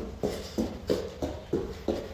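Feet landing on a foam martial-arts mat in a quick, even rhythm, about three thumps a second, as a taekwondo practitioner hops through rapid knee-raise repetitions.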